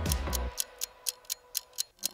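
Quiz countdown timer ticking like a clock, fast and even at about six or seven ticks a second. Background music plays under it, and its low notes drop out about half a second in.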